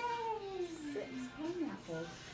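A wordless vocal call: one long cry falling slowly in pitch over about a second, then a shorter call that rises and falls.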